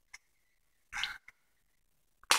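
Folded dollar-bill paper handled and pressed into shape: a short crinkle about a second in, with a couple of faint ticks around it.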